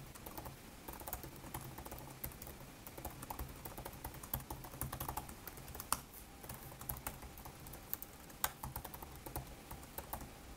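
Typing on a computer keyboard: a quick, irregular run of keystrokes, with a few sharper, louder key presses around the middle and near the end.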